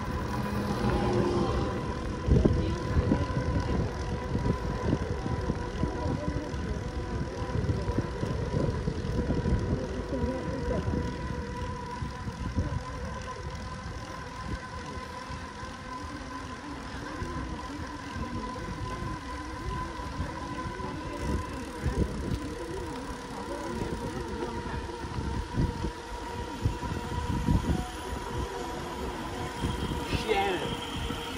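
Wind buffeting the microphone of a camera riding along on a road bike, a gusty, uneven low rumble with tyre noise from the paved road and a thin steady tone underneath.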